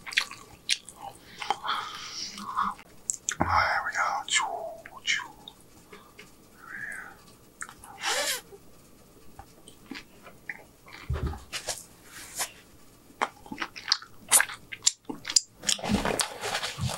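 Close-miked mouth sounds of a man chewing a consommé-dipped birria taco, with scattered sharp clicks at irregular intervals.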